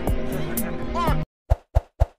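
Music and a voice from the film clip, cut off abruptly a little over a second in. Then come three quick pops about a quarter-second apart: the sound effects of animated like, subscribe and notify buttons popping onto the screen.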